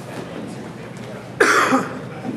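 A single loud cough close to the microphone, about one and a half seconds in, over the low murmur of a gymnasium.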